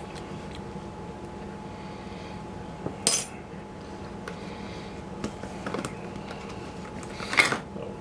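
Kitchen utensil scraping and tapping as mayonnaise is spread on bread, with one sharp clink of the utensil set down on the tiled counter about three seconds in and another short handling noise near the end, over a faint steady hum.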